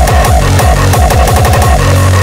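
Hardcore gabber electronic music, loud: pounding distorted kick drums that speed up into a rapid kick roll in the second half, ending on a held low bass note.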